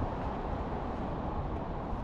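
Wind blowing across the microphone: a steady, low, even rush.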